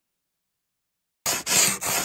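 Outro sound effect of about four quick, rough scraping strokes, like a dry brush swept hard over a rough surface. It starts a little past halfway through.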